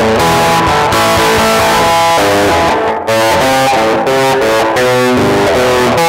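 Amplified semi-hollow T-style electric guitar played with the bare thumb and fingers rather than a pick: a quick run of single notes and partial chords, with the notes changing several times a second and a short break about three seconds in.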